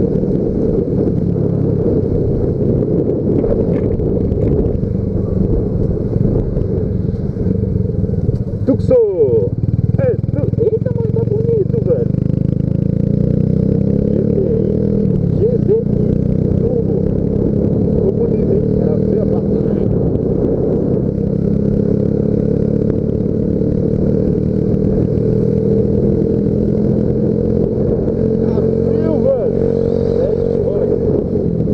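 Yamaha Factor 150 single-cylinder four-stroke motorcycle engine running while the bike is ridden. The engine note breaks and wavers briefly about nine seconds in, then its pitch climbs slowly near the end.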